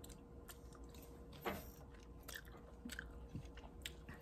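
Faint close-up chewing of blueberries: soft mouth clicks at irregular intervals, the clearest about a second and a half in.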